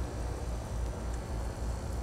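Steady low background rumble with a faint hiss, with no distinct events.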